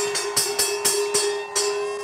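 Large brass cowbell struck over and over by hand, about three to four clangs a second over a steady ringing tone, rung to signal the market open. The strikes stop shortly before the end.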